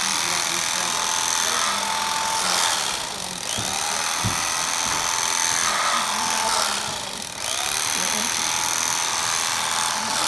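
Electric carving knife running as it slices through a cooked beef loin, its motor going steadily in three stretches and stopping briefly about three seconds in and again about seven seconds in.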